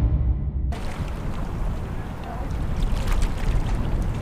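Steady wind noise on the microphone outdoors, a low noisy rumble. It comes in under a second in, as the tail of an intro sting fades out.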